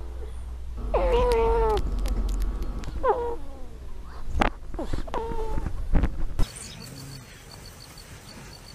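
A sleeping ferret, close-miked, making three high, whining squeaks, each under a second long, spaced about two seconds apart.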